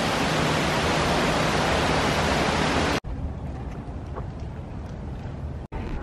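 Steady rushing hiss of running water, which cuts off suddenly about halfway through and leaves a much quieter outdoor background.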